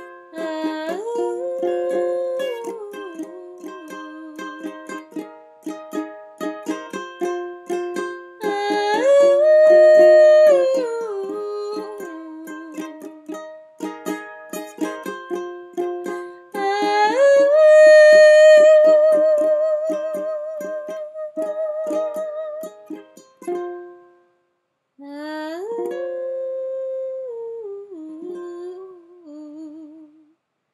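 A woman's voice singing a wordless melody over a strummed ukulele, with one long held note that wavers in vibrato about two thirds of the way through. The strumming stops after about 23 seconds, and after a short silence one last wordless phrase is sung almost alone.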